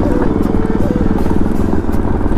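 Bajaj Pulsar motorcycle's single-cylinder engine running steadily under way, its firing pulses even with no change in revs.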